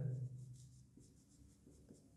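Marker pen writing on a whiteboard, faint strokes and rubs.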